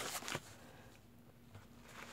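A few brief rustles of packaging being handled in the first half-second, then quiet with a faint steady hum.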